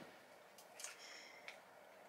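Near silence: room tone, with a few faint small clicks and rustles.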